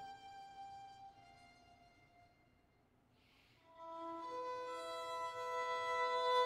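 Solo violin playing slow, sustained bowed notes. A held note fades almost to silence, and about four seconds in new long notes enter and swell.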